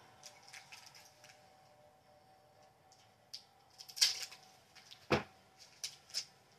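Small plastic bag of diamond-painting beads being cut open with scissors and handled: faint clicks and rustles, a sharp snip about four seconds in, then a short knock about a second later as the scissors are laid on the table.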